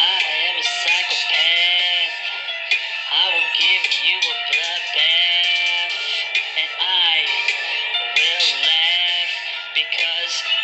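Rap song with a sung male vocal line whose pitch bends up and down in arcs; the sound is thin, with no bass.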